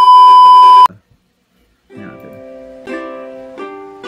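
A loud, steady test-pattern beep lasts about the first second. After a short silence, a ukulele starts playing chords about two seconds in, changing chord roughly every second.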